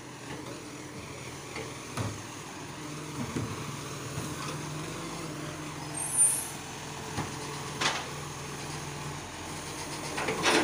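Side-loading garbage truck's diesel engine running steadily at low speed as it pulls up to kerbside bins, with a few knocks and a brief, loud air-brake hiss about six seconds in.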